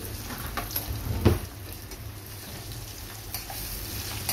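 Chopped garlic and vegetables sizzling in oil in a small saucepan, with a utensil clicking and scraping against the pan as they are stirred; one louder knock about a second in.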